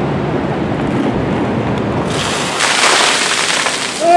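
A large load of water dumped from above onto a person and the pavement: a loud rushing splash that starts about halfway through and keeps going to the end, after a low steady rushing noise.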